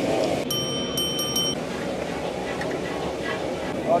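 Steady background noise of a busy eatery beside street traffic. About half a second in, a high electronic chime of several pure tones sounds for about a second, broken by a few short gaps.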